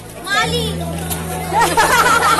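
Excited young voices chattering and calling out over one another: a short exclamation about half a second in, then louder, overlapping voices from about one and a half seconds on, over a steady low hum.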